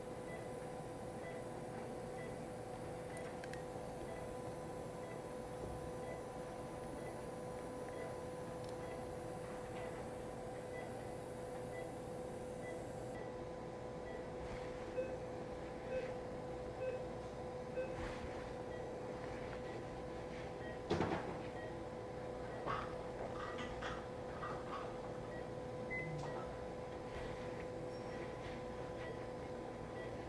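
Operating-room background: a steady hum with faint regular beeps about once a second, and a few short clicks of metal surgical instruments in the second half.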